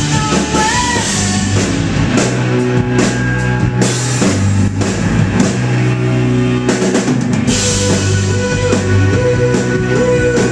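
Live rock band playing loudly: electric guitars over a full drum kit, with a steady beat.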